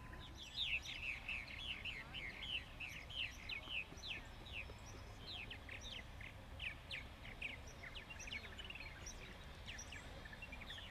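Songbirds chirping: many short, quick falling chirps overlapping, thickest in the first few seconds and sparser after, over a faint low outdoor rumble.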